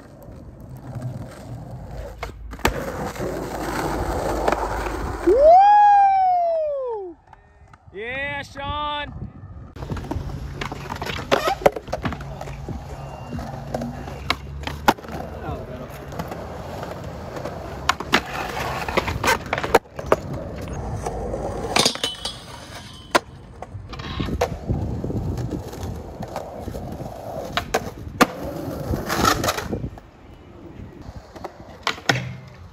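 Skateboard wheels rolling over concrete, with the sharp clacks of tail pops, board flips and landings again and again. About six seconds in comes a loud, high cry that rises and falls, then a quick run of shorter ones.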